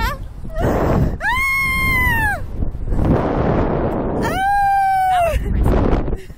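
A woman screaming twice on a slingshot reverse-bungee thrill ride: a long scream about a second in that rises and falls, then a second, steadier long scream near the end, with wind rushing over the microphone in between.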